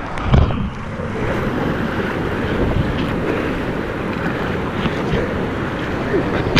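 Rushing whitewater around a kayak, heard close up with water spray and wind buffeting the microphone, as a steady loud roar; a heavy thump just after the start.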